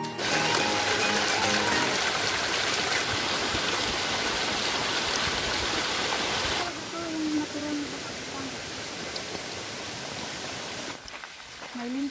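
Small mountain stream cascading over rocks, a steady close rush of water that drops to a quieter flow about two-thirds of the way through.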